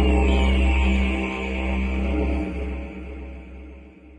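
Low, steady didgeridoo drone with a stack of overtones, fading out over the last second and a half.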